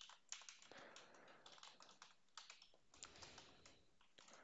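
Faint computer keyboard typing: a run of light, irregularly spaced keystrokes.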